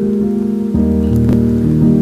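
Film background score: soft held chords, with a deeper bass note coming in under them about three-quarters of a second in.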